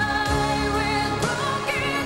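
Pop song: a woman's voice holds one long note over band and synthesizer backing, wavers about a second in, then moves up to a higher held note near the end.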